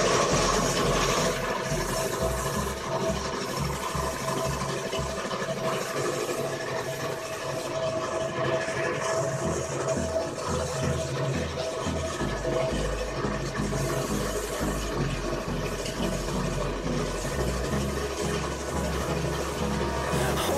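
Compressed-air paint spray gun spraying white paint onto wood: a steady hiss of air and paint mist.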